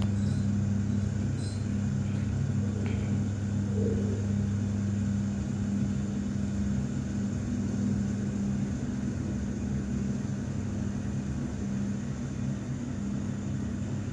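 TKE thyssenkrupp passenger lift car travelling down its shaft, a steady low hum with a deeper tone that fades about five seconds in.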